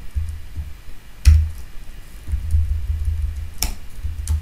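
Two computer keyboard keystrokes about two seconds apart, over a steady low hum.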